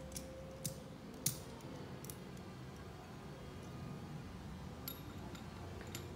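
A few light, sharp clicks of metal parts and tools being handled over a faint background, the loudest about a second in.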